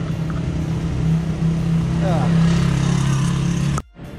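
Motorbike taxi engine running steadily during a ride, with road and wind noise. The sound cuts off suddenly just before the end.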